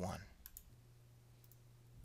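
Faint computer mouse clicks, a couple of light clicks about a second apart, over a faint steady low hum.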